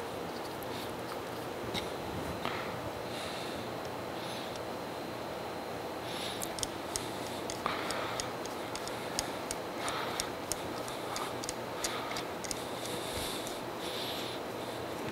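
Screws being turned by hand with a screwdriver into freshly tapped holes in a cast-iron casting: faint scattered metallic clicks and scrapes, thickest in the second half, over steady room noise.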